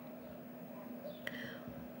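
Faint room tone with a low steady hum and one faint click a little over a second in.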